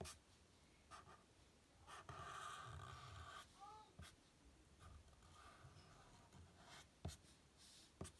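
Faint scratching of a black felt-tip marker drawn across paper in longer strokes, with a few light taps of the pen.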